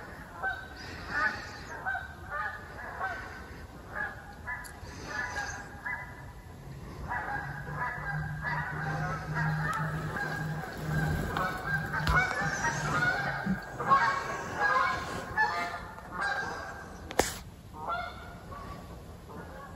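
Birds calling repeatedly, many short overlapping calls in quick succession, like a flock. A low steady hum runs under them for several seconds in the middle, and a sharp click comes near the end.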